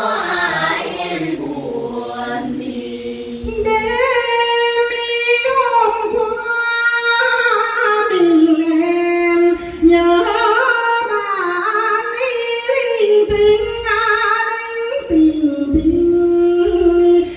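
Unaccompanied Vietnamese Quan họ folk singing: a group of young voices sings a phrase together, then from about three and a half seconds in a single woman's voice sings the next phrases alone, with long held notes that waver and glide between pitches.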